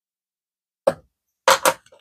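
Near silence, then short knocks of hands and an envelope against a plastic scoring board as the paper is folded: one about a second in and a quick pair near the end.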